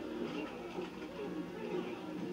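Faint, indistinct voices murmuring in the background of a quiet room.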